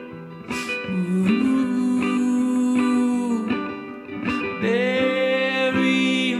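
Solo acoustic guitar with picked notes, under a man's voice singing long held wordless notes that slide up into pitch twice.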